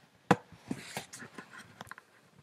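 Handling noise from a camera being moved and set in place: one sharp click about a third of a second in, then several lighter clicks and rustles.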